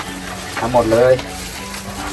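A man briefly calls out over soft background music, with the crinkle and rustle of a plastic bag of grilled chicken being handled.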